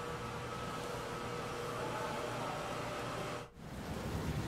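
Steady background hum and hiss with a faint steady tone in it. It drops out briefly about three and a half seconds in, then comes back.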